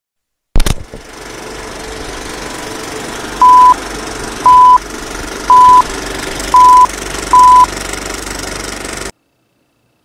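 Old film countdown-leader sound effect: a knock, then the steady clattering rattle of a film projector with five short, loud, single-pitch beeps about a second apart as the numbers count down. It all cuts off suddenly near the end.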